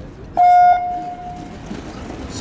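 Race start signal on a roller speed-skating track: a single loud, steady horn-like tone of about half a second, fading away over the next second. It sends the skaters off the start line.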